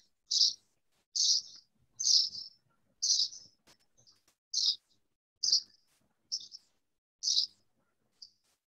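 A bird chirping over and over, about eight short high chirps at roughly one a second.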